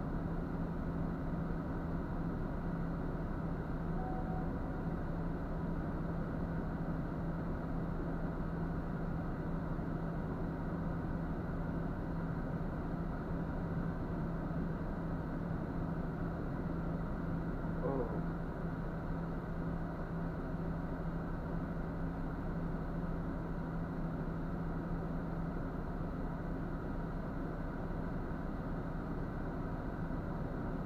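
Diesel engine idling steadily, a low, even drone heard from inside a truck cab.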